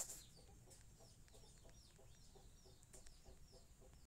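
Near silence with faint bird calls in the background: short, falling chirps repeating several times a second.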